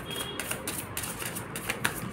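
A deck of tarot cards being shuffled by hand: a quick, irregular run of light clicking snaps, about six a second.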